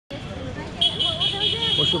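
Road traffic with a low engine hum and voices. From just under a second in, a high, shrill pulsing tone cuts through and is the loudest sound.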